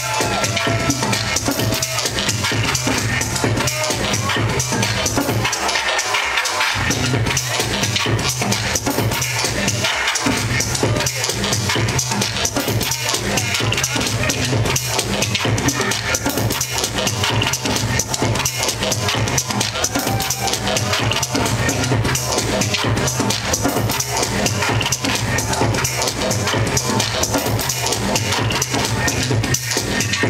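Loud electronic dance music from a live DJ set, with a steady kick-drum beat under a sustained bassline. The bass drops out for about a second around six seconds in, then comes back.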